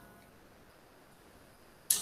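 Near-silent pause in room tone, then a short, sharp hissing intake of breath near the end as the lecturer gets ready to speak again.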